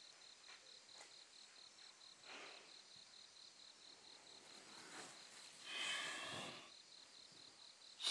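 Crickets chirping faintly in a steady, evenly pulsing rhythm, with a brief soft swell of noise about six seconds in.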